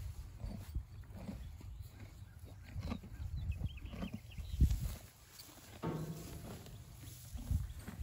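Yearling Percheron draft horses eating from a round hay bale, with scattered crackling and rustling of hay and chewing over a low rumble. A single thump about halfway through is the loudest sound.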